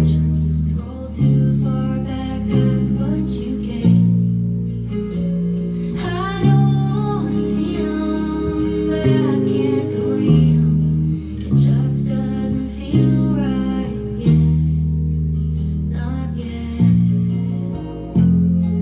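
Schecter SLS Elite-4 four-string electric bass with flatwound strings, played through a bass amp along with a country-pop recording. Deep held bass notes change about once a second, under plucked guitar and a gliding high melodic line about six seconds in.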